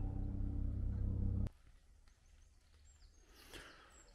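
A steady low mechanical hum, like an engine running, cuts off suddenly about a second and a half in. Quiet woodland ambience follows, with a faint bird call near the end.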